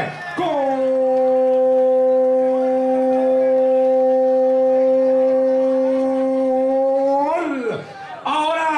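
A man's long drawn-out "gol" shout, held on one steady note for about seven seconds and dropping off at the end, calling a penalty kick that has gone in.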